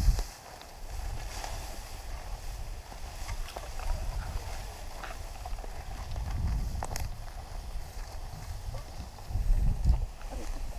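Wind buffeting the camera microphone in uneven low gusts, strongest at the start and again near the end, with tall grass rustling and brushing against a hiker walking through it. There is one sharp click about seven seconds in.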